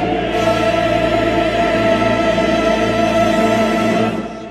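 Choral music: a choir holding a sustained chord over a steady low drone.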